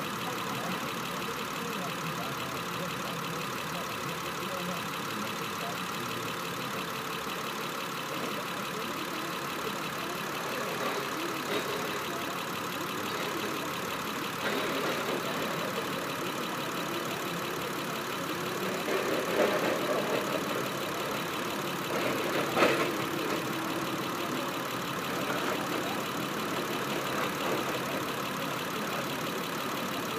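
2007 Saturn Vue's 3.5-litre V6 idling steadily, with one short sharp tick about three-quarters of the way through.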